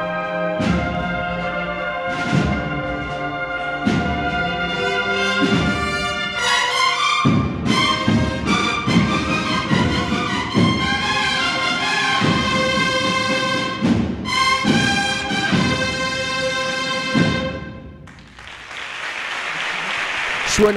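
A banda de cornetas y tambores (cornet and drum band) playing a processional march: brass chords over regular drum strokes, fuller from about six seconds in, ending on a final chord a few seconds before the end. Audience applause rises near the end.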